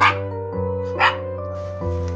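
A Maltipoo puppy barking twice in excitement, two short sharp yaps about a second apart, over background music.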